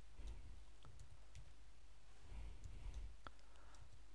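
Faint, scattered keystroke clicks from a computer keyboard as text is typed, over a low steady room hum.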